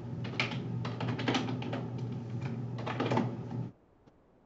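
Fast typing on a computer keyboard: a quick, irregular run of keystrokes that stops abruptly near the end, with a low steady hum beneath.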